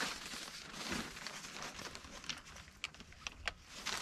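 Clothes and the portable dryer's fabric cover rustling as shirts on hangers are hung inside, with a few light clicks in the second half.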